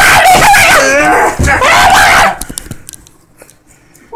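A man screaming loudly, a high, wavering wordless yell lasting about two seconds, then stopping abruptly, followed by a few faint knocks.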